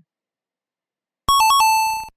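Electronic game-show sound effect: about a second in, a quick run of beeps stepping between two pitches, ending on a held lower tone. It marks a quiz answer revealed as correct.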